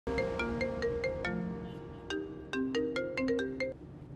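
Mobile phone ringtone: a quick melody of short, bright notes played in two phrases, with a brief break near the middle.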